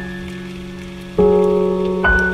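Slow, soft piano music: a held chord fades, then a new chord is struck about a second in, over a faint steady hiss.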